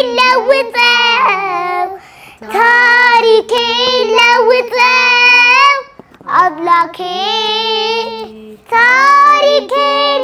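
Two young girls singing a slow devotional song together in long held phrases, with short breaths about two, six and eight and a half seconds in.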